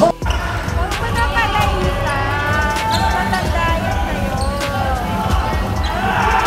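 Live basketball game sound in a gym: a ball bouncing and players' voices, under a steady background hip-hop beat.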